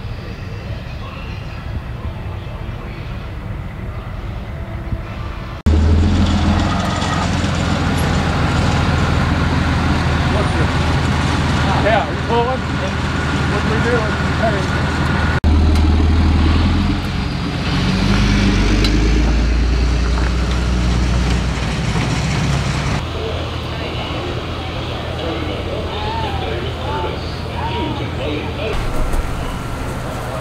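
Motor vehicle engines running close by, a steady low rumble that comes in suddenly about six seconds in and drops back about twenty-three seconds in, with quieter vehicle noise before and after.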